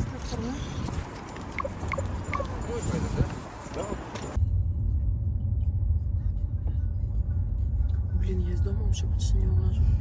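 Open-air street noise with a few light clicks and faint voices, then, about four seconds in, an abrupt change to the steady low rumble of road and engine noise heard from inside a moving car's cabin.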